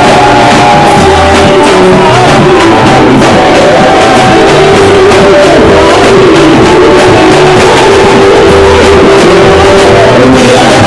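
Loud live church music: a man and a woman singing into microphones over a band, with a bass line moving in a steady beat under sustained chords.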